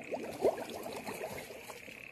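Faint sloshing and trickling of shallow paddy-field water over a steady high hiss, with one slightly louder short sound about half a second in.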